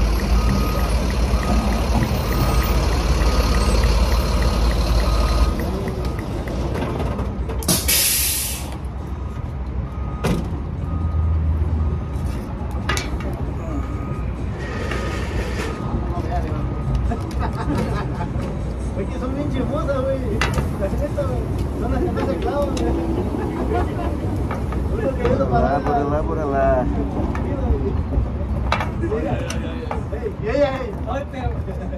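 A heavy truck pulling in close by: a low engine rumble with a steady repeating beep for the first five seconds or so, then a sharp hiss of its air brakes about eight seconds in. Later come voices and light clicks of handling.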